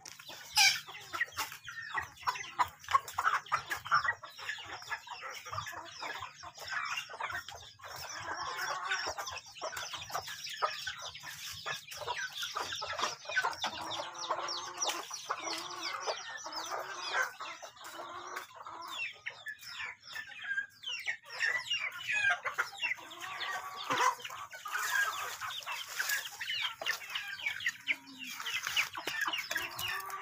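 A flock of chickens clucking and calling, many birds at once.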